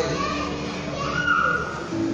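A child's high voice calling out in a large hall, in a lull of a man's amplified speech.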